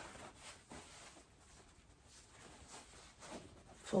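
Faint rustling of a fabric project bag, a Heather Bag style, as its top is folded down by hand into a basket shape.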